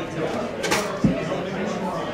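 Background chatter in a busy bar, with a short hiss and a single knock about a second in.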